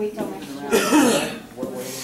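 A person coughing: one loud cough about a second in and a shorter one near the end.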